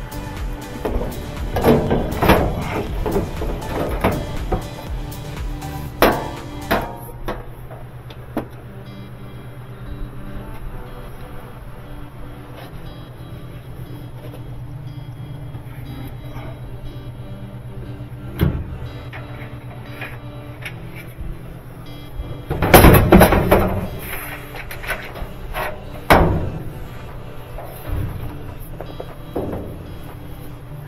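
Background music, with clunks and rattles of the dryer's sheet-metal panels being handled during disassembly. The loudest clatter comes about three quarters of the way through.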